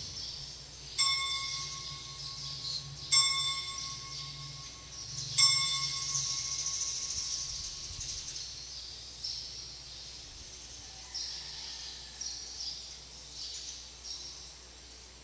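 An altar bell struck three times, about two seconds apart, each stroke ringing one clear tone that dies away slowly: the consecration bell rung as the chalice is elevated at Mass.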